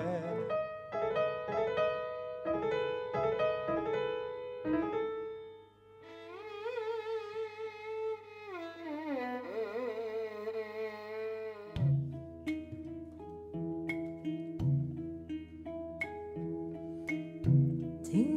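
Live acoustic ensemble music: plucked string notes for the first few seconds, then a solo violin line with vibrato and sliding pitch that glides down, and from about two-thirds of the way in, plucked notes over a low sustained drone.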